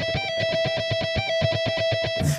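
Electric guitar playing a fast repeated lead lick on the high E string: a 15th-to-12th-fret pull-off and then rapid picking of the 12th-fret note, eight notes to the beat. One steady note is picked quickly and evenly, with a brief step up to the higher note about every half second.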